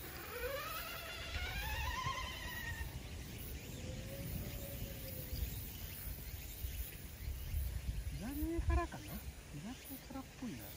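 Wind buffeting the microphone, with a long wavering call that rises then falls over the first few seconds and a brief voice near the end.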